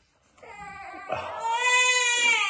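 A man's high-pitched, drawn-out whine of pain, building from about half a second in and held on one steady pitch to the end: his reaction to the burn of a Dragon's Breath superhot chilli.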